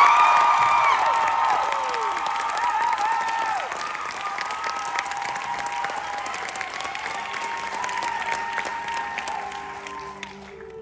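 Audience applauding and cheering, with high whoops and screams over the clapping in the first few seconds, then the applause slowly dying down.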